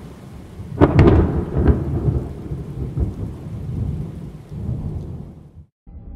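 Thunderstorm sound effect: a loud thunderclap about a second in, a second crack just after, then rolling rumble over steady rain, fading out near the end.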